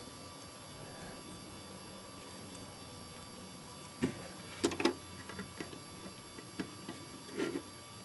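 Hard plastic Lego pieces clicking and knocking as a minifigure is handled and fitted onto a Lego speeder: a few sharp clicks about four seconds in, then lighter scattered ticks. Before that only a faint steady hum.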